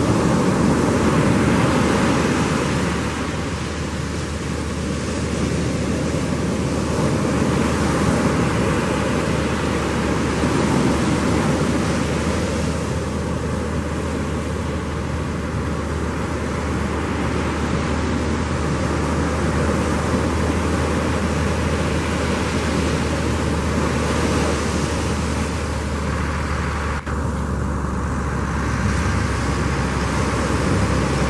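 Breaking surf as a steady roar on the beach, under a constant low engine hum.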